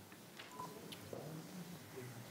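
A single short electronic beep about half a second in, with a few faint clicks and a low murmur of voices in a quiet meeting room.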